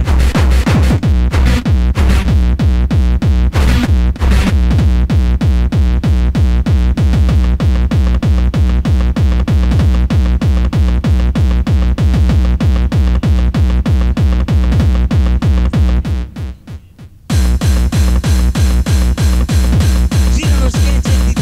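Electronic techno dance music from a DJ set: a steady, pounding kick drum over heavy bass. About 16 s in, the beat drops out for about a second, then comes back with added bright high-end percussion.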